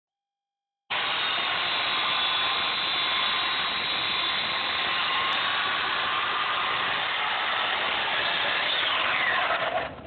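Corded electric chainsaw running steadily as it cuts into expanded polystyrene foam, starting about a second in. Near the end the trigger is released and the motor winds down with a falling whine.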